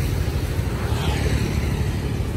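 Steady low rumble of motor-vehicle traffic on a city street, with motorcycle and car engines running close by.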